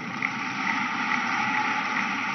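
Large crowd applauding, a steady even clatter of many hands clapping.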